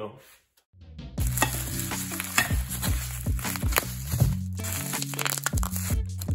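Background music with a bass line and a steady beat that starts about a second in, after a brief silence.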